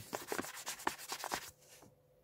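A fingernail scratching at the scratch-off panel of a paper warranty card: a rapid run of short scrapes for about a second and a half, then it stops.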